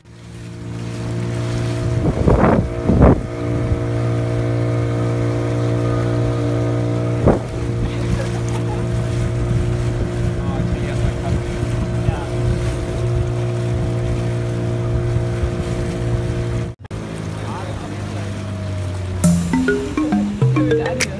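A boat's outboard motor running at a steady pitch, with water and wind noise over it and a few short splashes or gusts early on. The engine sound drops out briefly near the end, and music comes in over it.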